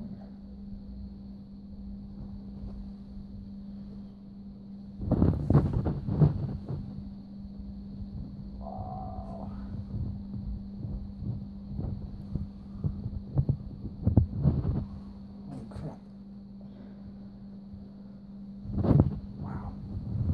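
Rustling and bumping of a furry fursuit feetpaw being handled and pulled on, in loud bursts about five seconds in, around fourteen seconds and again near the end, over a steady low hum.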